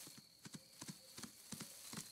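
Faint, light hoofsteps of a deer walking: a quick, uneven series of soft taps.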